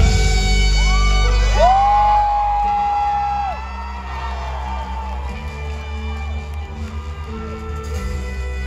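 Indie rock band playing live, an instrumental stretch after the vocals with a trumpet in the mix and whoops from the crowd. A long held high note bends up about a second and a half in and falls away near the middle, after which the band plays more quietly.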